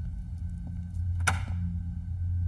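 A wooden office door's latch clicks once as the door is pulled open, a sharp clack a little over a second in, over a low droning music score.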